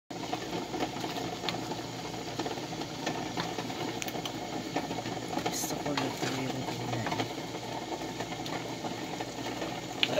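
Wooden spatula stirring a vegetable stew in a wok, with repeated small clicks and scrapes against the pan over a steady low hum.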